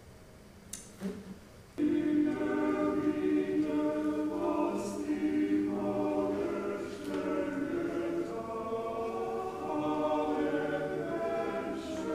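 Georgian male vocal ensemble singing polyphony in several parts without instruments, heard played back over a lecture hall's sound system. The singing starts suddenly about two seconds in, after two brief knocks.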